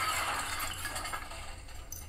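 Soundtrack of a film trailer playing on a television in the room: noisy sound effects with no speech that thin out near the end, over a low steady hum.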